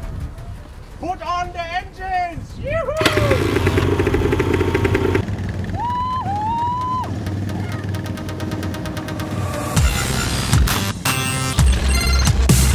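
Quad bike (ATV) engines running and revving as the riders pull away, with short whoops from the riders about a second in and again about six seconds in. Rhythmic background music comes in near the end.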